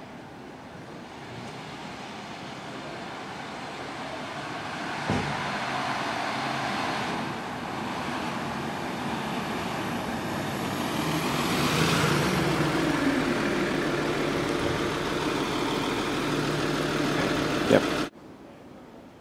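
Classic 1960s Mercedes-Benz coupé driving toward the listener, its engine and tyre noise growing louder as it approaches, with the engine note changing pitch in the second half. A sharp knock about five seconds in and another near the end.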